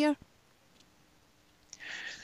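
The last word of a woman's speech, a second and a half of pause, then a short breath drawn in near the end, just before a man answers.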